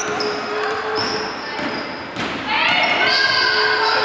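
Basketball being dribbled on a wooden gym floor during play, with sneakers squeaking in short high chirps and players' voices echoing around the hall; a held call rings out over the last second and a half.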